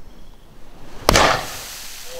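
A 100 kg Thor's hammer dropped from a 45 m tower hits tarp-covered sand with one sharp, heavy thud about a second in. A short fading rumble follows.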